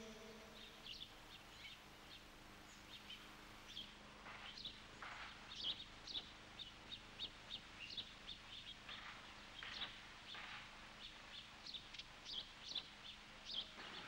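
Faint chirping of small birds in short, scattered calls.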